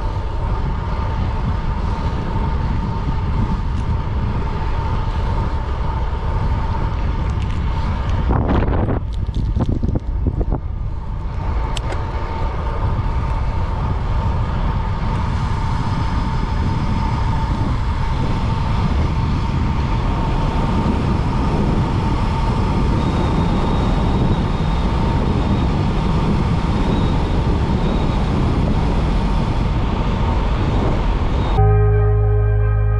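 Wind buffeting the microphone of a handlebar-mounted action camera, with tyre noise from a road bicycle riding and then descending at speed; a steady thin whine runs under it.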